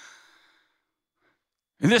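A man's short breath, a sigh-like exhale into a handheld microphone, fading within about half a second, then a pause before his speech resumes near the end.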